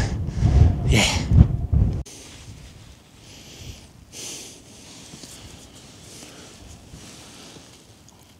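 Wind buffeting the microphone under a brief spoken "yeah", then it cuts off to a much quieter steady hiss of wind on the open mountain tops, with two soft puffs about three and four seconds in.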